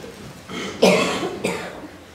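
A man coughing twice into a close microphone, the first cough louder and the second following about half a second later.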